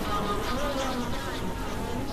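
Experimental electronic synthesizer drone: a dense, noisy bed with thin tones that waver and glide up and down in pitch, at a steady level.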